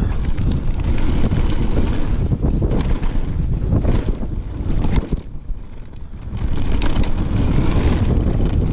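Mountain bike descending a gravel forest trail: tyres rumbling over loose stones with clicks and rattles from the bike, under heavy wind buffeting on the camera microphone. The noise eases for a moment about five seconds in, then picks up again.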